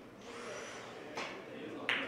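Cue and carom balls clicking as a three-cushion billiards shot is played: two sharp strikes, one a little past a second in and a louder one near the end.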